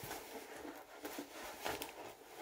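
Faint rustling and light clicks of a cardboard shoe box and its packaging being handled as the trainers are lifted out.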